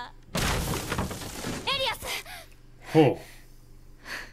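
Anime sound effect of a crash, like something shattering, lasting about a second, followed by brief voices and a short, loud cry about three seconds in.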